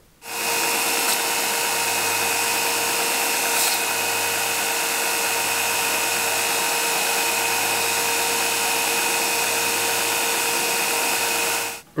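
Belt grinder running a worn 400-grit belt while the steel tang of a knife handle is held against the contact wheel. It is a steady, even grinding hiss over the machine's constant hum, starting and stopping abruptly.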